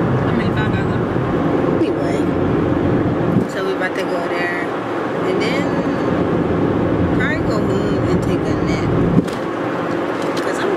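Steady low road and engine rumble inside a moving car's cabin, easing off about a third of the way in, with a person's voice going on over it without clear words.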